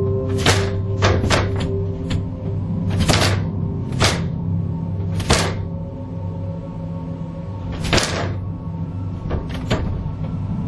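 Sharp knocks on a ceiling attic hatch, about ten in all, coming irregularly, some in quick pairs, with a long pause in the middle, over a low steady drone.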